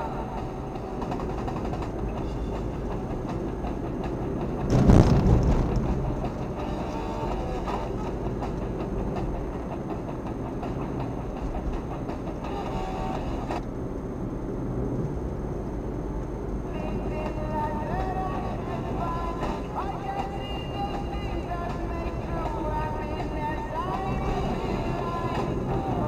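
Rock music from the car radio playing over the steady road and engine rumble inside a moving car. There is a brief loud rushing thump about five seconds in.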